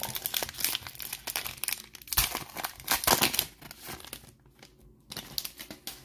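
Foil wrapper of a Panini Prizm Draft Picks card pack being torn open and crinkled by hand, crackling in dense bursts for about four seconds, loudest around the middle, then thinning to a few light rustles near the end.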